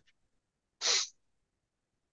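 A man's single short, sharp breath noise about a second in, like a quick huff or sniff.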